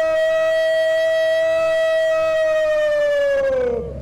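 A parade-ground word of command shouted as one long drawn-out note. It swoops up into a steady held pitch, which holds for about three and a half seconds, then falls away and stops just before the end.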